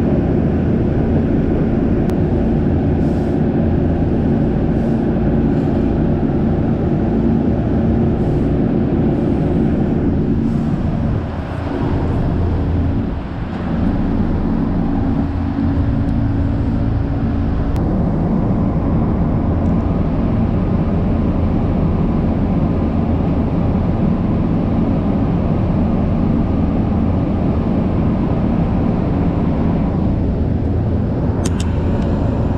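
Inside a 1969-built Keihan electric commuter car under way: a steady running noise of wheels on rails with a low motor hum. The noise dips briefly twice near the middle.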